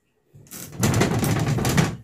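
A wooden wardrobe door with a mirror panel being gripped and wobbled, giving a loud, harsh, rapid rattle that starts about half a second in and stops near the end. The mirror glass is loose and wobbly in its frame.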